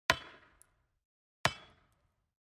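Sharp metallic clanging hits, one at the start and another about a second and a half later, each ringing out and fading over about half a second, part of an evenly paced series of sound-effect strikes.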